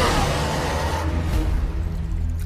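Background score with a heavy low drone. A falling whoosh effect sweeps down over the first second, and the brighter top of the sound dies away toward the end.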